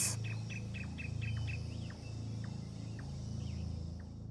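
Birds chirping in a forest: a quick run of short, evenly spaced chirps for the first second and a half, then a few scattered falling notes, over a low steady drone.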